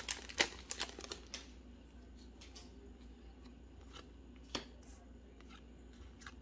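Magic: The Gathering cards being slid out of a torn-open foil booster wrapper and handled: faint rustles and small clicks. There are several quick flicks in the first second and a half and one sharper click about four and a half seconds in.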